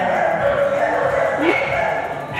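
American Bully dogs barking, with a wavering high-pitched sound running through.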